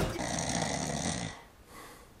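A man giving a theatrical snore for just over a second, then a fainter breath.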